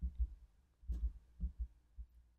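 A handful of dull, low thumps and soft clicks, irregularly spaced: a computer mouse being clicked and moved on the desk while on-screen EQ sliders are dragged, picked up by the narrator's microphone.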